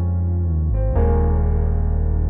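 Slow instrumental introduction to a ballad: keyboard holding sustained chords, with a new chord coming in about a second in.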